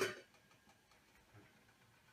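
The end of a spoken word at the very start, then near quiet with a few faint soft clinks as a metal lid is lifted off a large cooking pot.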